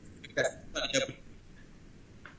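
A man's voice coming through a video-call line in a few short, clipped syllables within the first second.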